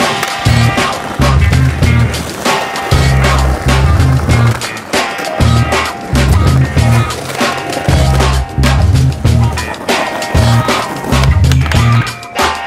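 Music with a bassline and steady beat, over skateboard sounds: urethane wheels rolling on brick paving and the board popping and landing during flatground tricks.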